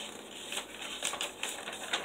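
A sheet of paper being handled and unfolded, giving a run of light, irregular crackles.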